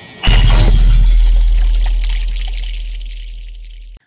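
Intro sound effect: a rising whoosh into a heavy impact with a deep boom and a bright, crashing high layer, fading away over about three and a half seconds before cutting off.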